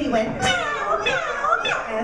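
A group of young children's voices shouting and chattering together, high-pitched and overlapping.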